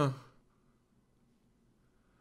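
A man's short sighing 'huh', falling in pitch and over within the first half-second, then near silence.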